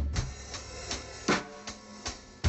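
Acoustic drum kit played in a sparse, lighter passage: a handful of scattered stick strikes, the loudest a little over a second in.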